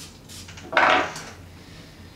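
A single short spray from an Acqua di Gio Profumo cologne atomiser, a sudden hiss about three-quarters of a second in.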